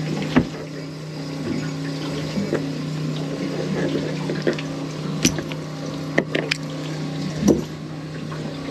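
A small onboard water pump humming steadily with water running. A few sharp knocks come over it as a mackerel is handled on a plastic cooler lid, the loudest about five and seven seconds in.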